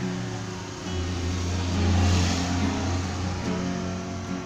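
Acoustic guitar strumming. A passing motor vehicle's low rumble rises over it from about a second in, is loudest about two seconds in, and fades again.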